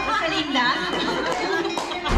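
Group chatter: several people talking over one another.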